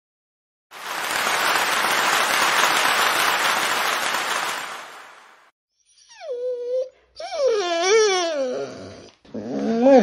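A burst of applause lasting about five seconds and then fading, followed by several high, wavering whines whose pitch slides down and up.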